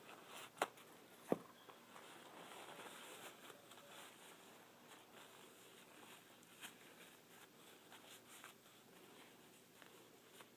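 Faint rustling of a paper towel as fingers are wiped clean with it, with two sharp ticks in the first second and a half and a few small ticks later.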